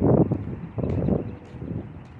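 Wind buffeting the microphone in gusts: a loud, uneven low rumble that swells at the start and again about a second in, then dies down.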